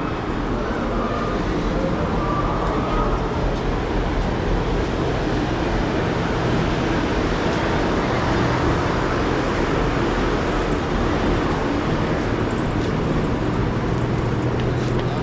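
Busy street ambience: steady traffic noise from passing motorbikes and vehicles, with voices of people nearby.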